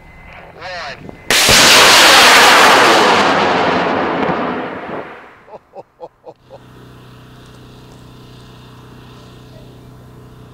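High-power rocket motor, M-class, igniting about a second in with a sudden loud roar of exhaust that fades away over about four seconds as the rocket climbs out of earshot.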